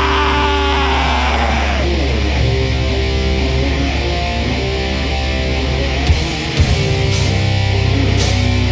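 Live heavy metal band playing: distorted guitar riffing over a held low bass note, with sharp drum hits about six seconds in and a cymbal crash near the end.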